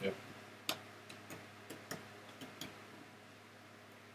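A handful of faint, irregularly spaced clicks over the first three seconds, the first the sharpest, then only faint room hiss.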